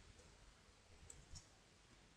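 Near silence with a few faint clicks of computer keyboard keys being typed, a little over a second in.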